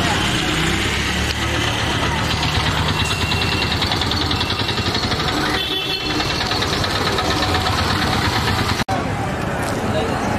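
Street ambience with vehicle engines running and people's voices in the background, cut by a brief drop-out near the end.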